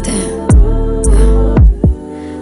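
Instrumental stretch of a slow R&B track between vocal lines: sustained chords over two deep 808-style bass hits that drop in pitch.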